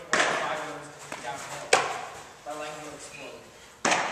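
Sharp smacks of a baseball during a fielding drill, three of them, near the start, about a second and a half in and just before the end, with voices in the background.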